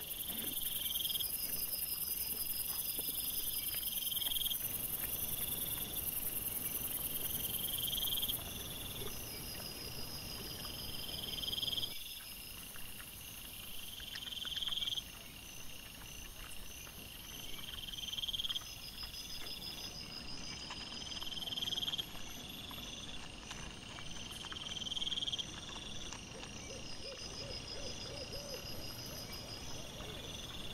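Night-time insects calling: a call that swells and then cuts off about every two seconds, with a higher pulsed trill at intervals and a steady very high hiss-like trill behind them.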